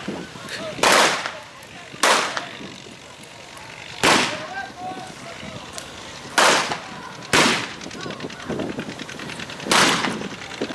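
Six gunshots from revolvers firing blanks in a staged gunfight, spaced unevenly about one to two and a half seconds apart, each a sharp crack with a short echo.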